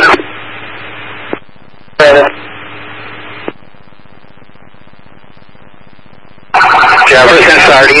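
Police scanner radio traffic. A transmission ends with a short tail of hiss and a click about a second in. A brief keyed burst with more hiss follows at about two seconds, then low background noise, until a new voice transmission starts about six and a half seconds in.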